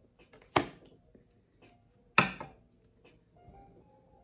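Two sharp knocks about a second and a half apart, each dying away quickly, over faint background music.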